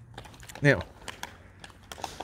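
Quick, irregular light clicks of footsteps and claws on block paving, with a man's voice saying one word, "now", as the loudest sound.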